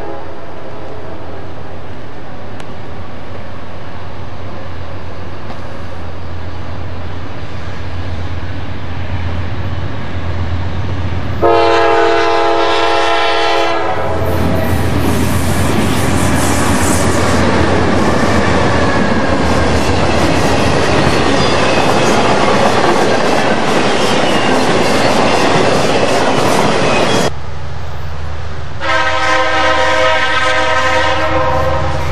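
Norfolk Southern diesel freight locomotive approaching with a low rumble, then sounding its multi-chime air horn for about two and a half seconds and roaring past close by with loud wheel and engine noise and the clatter of rail joints. Near the end, after a cut, another locomotive horn begins to blow.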